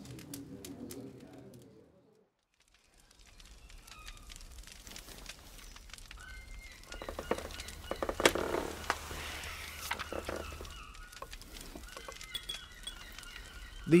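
A sound fades out over the first two seconds and there is a moment of near silence. Then a quiet rural outdoor ambience fades in, with birds calling and a run of light clicks in the middle.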